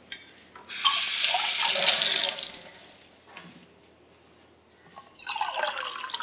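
A kitchen tap runs into a stainless steel sink as a steel tumbler is rinsed, an even splashing hiss that lasts about two seconds and then stops. Water sounds start again near the end.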